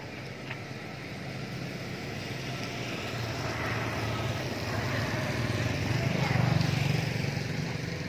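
A passing motor vehicle's engine: a low hum that grows steadily louder to its peak about six seconds in, then begins to ease off.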